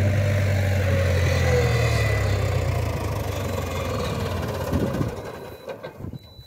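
Massey Ferguson 4265 tractor's diesel engine running steadily, fading away over the last couple of seconds.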